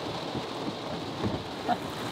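Rain falling on a car's roof and windows, heard from inside the car: a steady patter of many small drops.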